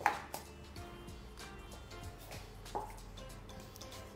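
Soft background music with a few light knocks over it; the sharpest knock comes just after the start.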